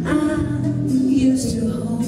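A small live band playing, with a woman singing over acoustic guitar.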